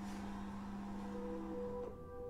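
A steady low hum over a faint noisy background. Soft, sustained musical notes from a film score start to come in about halfway through.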